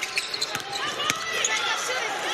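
Basketball game sounds on a hardwood court: the ball bouncing with short knocks, the sharpest right at the start, and sneakers squeaking in short high chirps.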